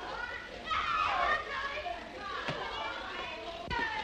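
Children shouting and chattering together at play, many high voices at once, with two sharp knocks partway through.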